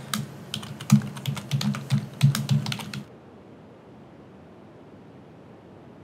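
Typing on a computer keyboard: a quick, uneven run of key clicks for about three seconds.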